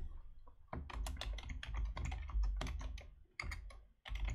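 Computer keyboard typing: a fast run of key clicks starting just under a second in, easing off near the end.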